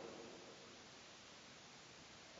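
Near silence: faint steady hiss of room tone, with the last of a man's voice fading away at the very start.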